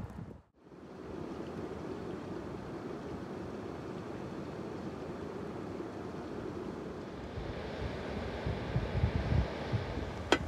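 Wind blowing over the microphone: a steady rushing, with low buffeting gusts getting stronger in the last couple of seconds.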